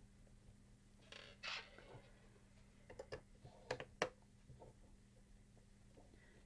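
Faint clicks and scrapes of a hand screwdriver backing screws out of a CD player's housing, with screws set down on the workbench: a soft scrape about a second in, then a few sharp clicks around the middle.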